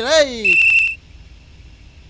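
A man's drawn-out call "aa re", rising then falling in pitch, overlapped about half a second in by a shrill pea-whistle blast with a fluttering trill, lasting about half a second. This is the kind of whistle a bus conductor blows to signal the driver.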